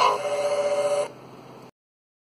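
Closing jingle ending on a held chord of several steady notes, cut off abruptly about a second in with a faint tail.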